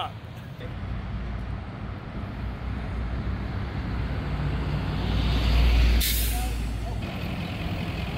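Road traffic with a heavy vehicle's low engine noise building, then a sharp air-brake hiss about six seconds in that cuts off about a second later.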